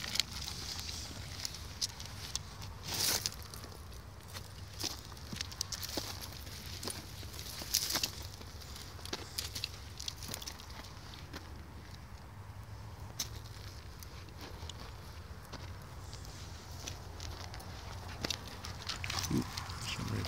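Footsteps and handling noises on dry, gravelly ground: scattered crunches and clicks, a few louder ones, over a steady low rumble.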